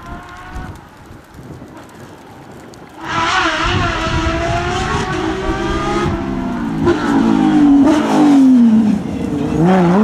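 A Porsche 911 GT3 rally car's engine at racing speed: faint at first, then suddenly much louder about three seconds in, revving hard with its pitch climbing and dropping through gear changes. Near the end the pitch falls sharply as the car brakes for a corner, then climbs again as it accelerates away.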